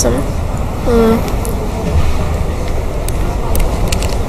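Steady low rumble and hiss of background noise, with one short vocal sound about a second in and a few light clicks near the end.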